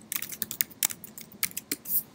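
Typing on a computer keyboard: a quick, uneven run of keystrokes entering a command, with a louder stroke near the end.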